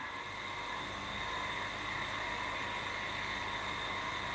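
A steady mechanical hum and hiss with a thin, high whine, switching on suddenly at the start and running on evenly.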